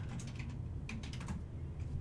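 Light clicks of typing on a computer keyboard: a few scattered keystrokes, faint.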